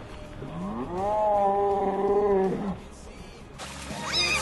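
One long drawn-out vocal cry: the pitch rises, holds steady for about a second and a half, then drops off.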